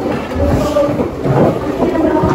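A low rumble under indistinct voices and classroom room noise.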